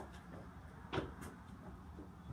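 A single short, faint knock or click about a second in, over a low steady background rumble.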